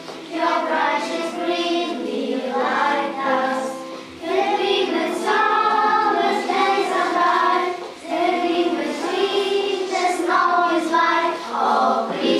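A group of children singing a song together in phrases of about four seconds, with short breaks between phrases.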